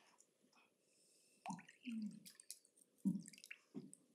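A lull with faint room tone and a few short, scattered small sounds, the sharpest about three seconds in.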